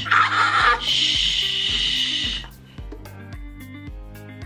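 A newborn baby gives one loud, harsh cry lasting about two and a half seconds as his mouth is wiped clean with a cloth. It cuts off suddenly, over background music with a steady beat.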